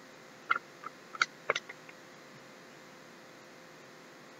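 Small plastic or foil packets being handled: a quick run of about six short clicks and squeaks between half a second and two seconds in, then only faint background.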